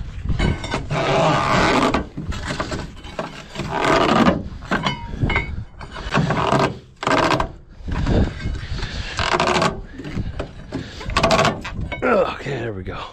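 A flatbed trailer's cargo-strap winch being cranked tight with a long winch bar, in a series of strokes each about a second long.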